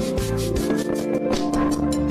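Live reggae band playing: pulsing bass and drums under sustained keyboard or guitar chords, with a regular run of bright percussion strokes on top.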